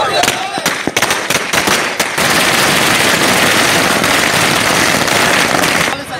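A string of firecrackers going off. There are several separate sharp bangs over the first two seconds, then a dense, rapid crackle that runs on for about four seconds and stops near the end.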